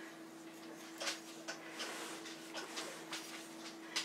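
Faint, soft ticks and brushes of a paring knife cutting vent slits into raw pie dough, over a steady low hum.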